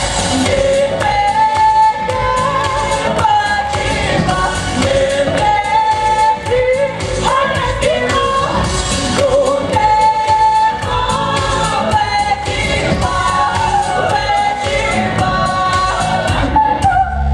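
A woman singing a pop-style song into a handheld microphone, her melody carried over an instrumental accompaniment with a steady beat.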